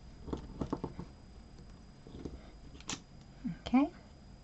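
Light clicks and taps from a clear stamp being pressed and handled on a die-cut card panel, with a sharper click about three seconds in. Near the end comes a short call that rises in pitch, the loudest sound here.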